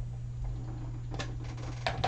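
Steady low hum with two faint clicks in the second half, as a stamp ink pad is handled.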